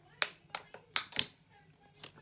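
Thin disposable plastic water bottle crackling as it is tipped up and drunk from: about five sharp crackles in the first second and a half.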